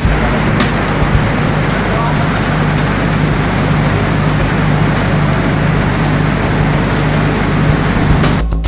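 54 kW diesel generator set running steadily, a loud, even engine drone with a steady low hum.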